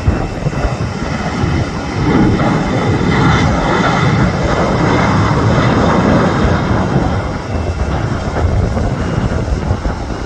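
Boeing 737 jet engines at takeoff thrust through the takeoff roll and lift-off: a steady rushing noise that grows louder about two seconds in and eases a little near the end.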